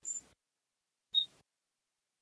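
A pause that is mostly dead silence, broken by two brief, faint noise blips about a second apart, each with a short high-pitched tone in it.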